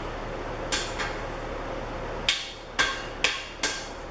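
Rubber mallet tapping a foot cap onto the end of a steel shelving post: one tap, then four more in a row about half a second apart in the second half.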